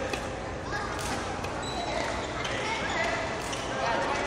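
Sports hall ambience: indistinct voices in a large hall, with rubber-soled shoes squeaking on the wooden court floor and a few sharp taps.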